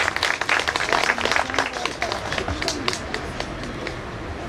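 Scattered applause from a small audience, many separate hand claps that thin out after about three seconds.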